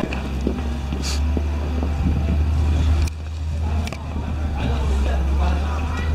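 Steady low rumble of wind on the camera microphone outdoors in the snow, with a couple of short sharp knocks.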